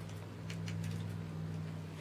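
Light handling of wire being bent by hand along a paper template: a few faint ticks over a steady low hum.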